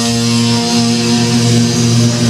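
Amplified electric guitar and bass left ringing after the last chord: a loud, steady low drone with a buzz, with no drums or picking.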